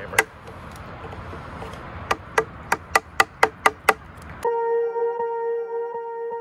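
Hammer striking a wood chisel to knock out a saw-kerfed notch in a wooden beam: one strike, then a quick run of about eight strikes, roughly four a second. About 4.5 s in, music cuts in suddenly and runs to the end.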